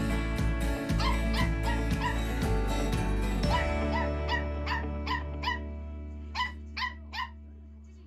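A Jack Russell terrier puppy gives a run of short, high yips, about two a second, while it plays. Background music fades out underneath.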